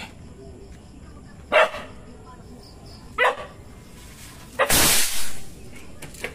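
A dog barks twice, then about four and a half seconds in a kwitis skyrocket built on a Yakult bottle launches with a loud rushing hiss that lasts about a second.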